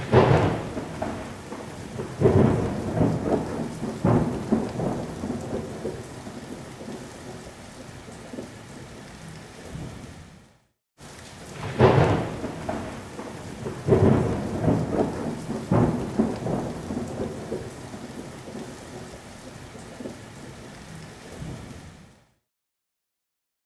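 Thunderstorm: three rolls of thunder about two seconds apart over steady rain, then the rain alone as the rumbles fade. After a brief cut to silence about halfway, the same stretch of thunder and rain plays again.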